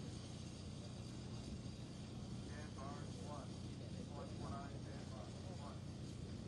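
Faint, indistinct voices talking at a distance over a steady low hum.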